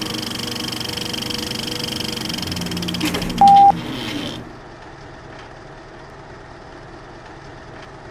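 Closing music of a promotional reel, a sustained layered chord that dies away about four seconds in, with a short, loud single-pitched beep just before it ends. After that, only a faint steady hiss with a few soft clicks.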